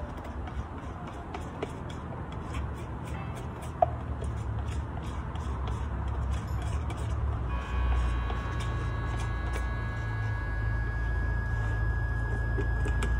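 Palette knife scraping the inside of a plastic paint jar, a light ticking of small scrapes and clicks. A steady low rumble with a high hum comes in and grows louder about seven and a half seconds in.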